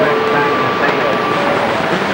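CB radio receiver hissing with static between transmissions, a few steady whistling tones and faint garbled voices of weak, distant stations buried in the noise.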